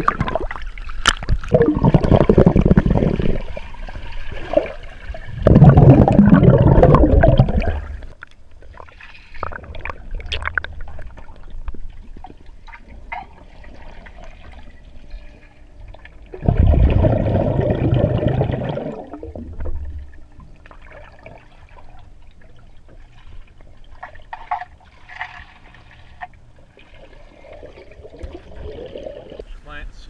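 Pool water sloshing and gurgling around a GoPro camera dipped in and out of the surface as otters swim close by. There are three loud rushes of water, each a few seconds long: at the start, about six seconds in, and about seventeen seconds in, with quieter lapping and trickling between.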